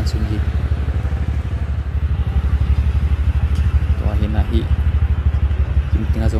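A motorbike engine idling close by, a steady low rumble with a fast, even pulse, with people talking in the background.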